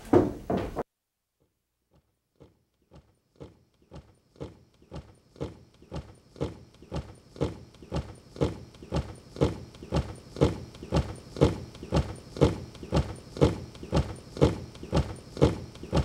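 Soldiers' boots marching in step on a gravel road, about two steps a second, starting faint after a short silence and growing steadily louder as they approach.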